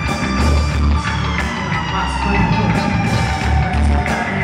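A live rock band playing: electric bass and drum kit driving underneath electric guitar, with one held note sliding slowly down in pitch.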